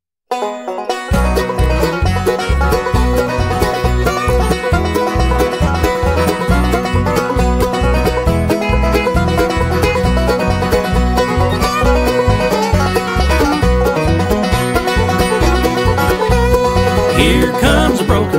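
A bluegrass band starts a song after a moment of silence: an instrumental intro led by banjo and guitar over a steady pulsing bass rhythm. Singing comes in near the end.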